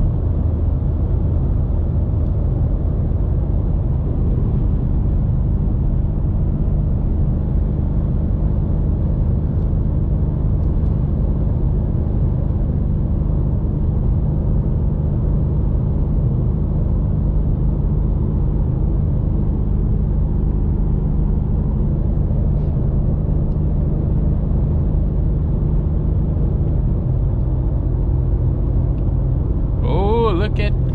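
Cabin sound of a BMW M5 Competition (F90) with its twin-turbo V8 cruising at steady highway speed: a continuous low engine drone mixed with road and tyre noise. The engine note shifts a little lower near the end.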